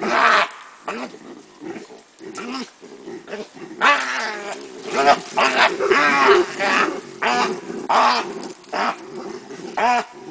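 Loud, harsh animal cries repeated about once a second, loudest between about four and eight seconds in, over lower-pitched calling, at a baboon kill of a bushbuck calf.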